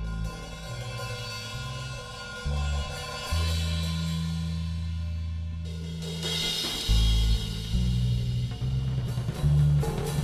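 Free-jazz improvisation for bass and drum kit: the bass holds long low notes, and about six seconds in the cymbals come in with a bright wash as the bass grows louder.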